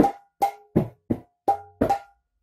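Mridanga (khol) drum played by hand: six quick, evenly paced strokes in a practice rhythm pattern, several ringing briefly, with no deep sustained bass stroke.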